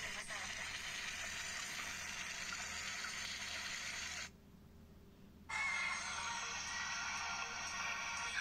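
A steady hissing, rushing noise that cuts out abruptly about four seconds in, for about a second, then comes back.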